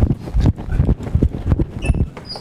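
Footsteps: a quick run of heavy, low thuds, about three a second, picked up close on a microphone.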